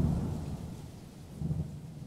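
Transition sound effect on the cut: a sudden thunder-like low rumble that starts at once and fades over about two seconds, swelling again briefly partway through.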